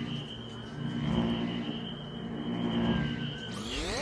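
Sustained synthesizer underscore: a steady high tone over low held notes that swell and fade, with a sweep rising in pitch near the end.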